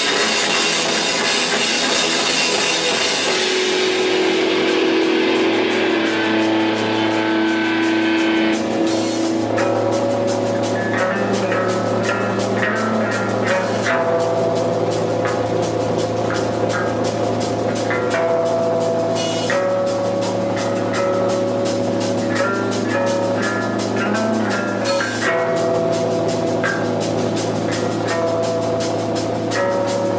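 Live rock band playing on a Pearl drum kit and amplified electric guitars. A bright cymbal wash dies away over the first several seconds, then steady drumming runs under long held guitar notes that change about every five seconds.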